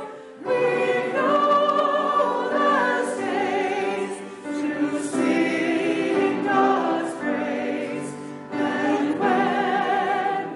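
Congregation singing a hymn in several voice parts, held notes with brief breaks between phrases about every four seconds.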